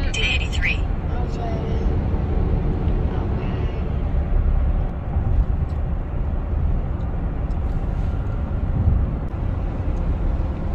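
Steady low rumble of a car's engine and tyres heard from inside the cabin while driving at highway speed.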